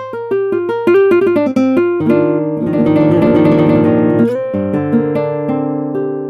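The Roland FA-06 synthesizer's SuperNATURAL 'Classic Gtr' acoustic guitar sound, played from the keyboard. First come single plucked notes, then a quick, dense run of chord notes about two seconds in. It ends on held chord notes that fade away.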